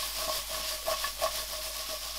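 Sliced onions and capsicums sizzling in an oiled frying pan while a wooden spatula stirs them, with a steady hiss and a few light clicks.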